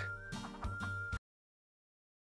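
Two men laughing with a cackling, clucking sound over a faint steady tone, cut off abruptly just over a second in, then digital silence.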